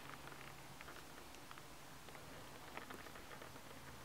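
Very faint background hiss with a scattering of small, light ticks and scuffs from a person shifting their footing on a gritty concrete ledge littered with debris.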